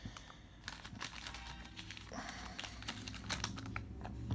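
Trading cards being handled and flipped through in the hands: faint, scattered light clicks and rustles of card stock.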